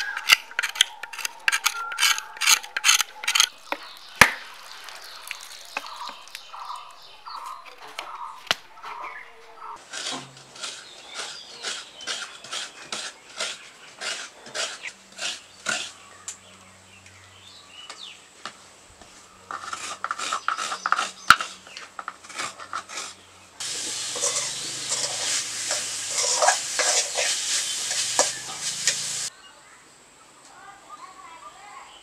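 A machete blade chopping into a coconut husk, several quick strikes a second for the first few seconds, then sparser strikes. Later comes a run of regular strokes with the clatter of a steel wok as grated coconut is worked by hand, and near the end a stretch of dense noise that starts and stops abruptly.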